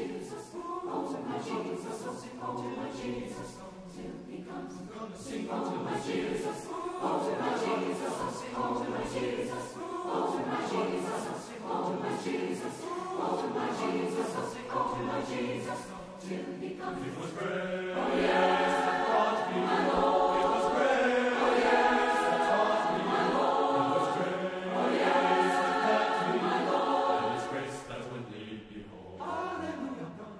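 Large mixed choir singing, the sound growing louder and fuller about eighteen seconds in.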